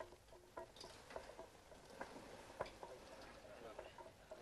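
Faint, sharp knocks, a few irregularly spaced and the strongest about two and a half seconds in, from work on a wooden cart wheel whose iron tire is being fitted while steam rises off it.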